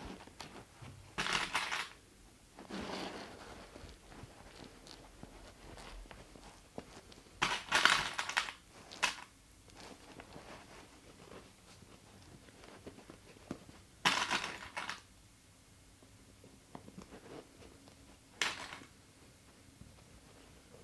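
Stiff fabric panels of a backpack being handled and clipped together, rustling and crinkling in several short bursts, with small clicks in between.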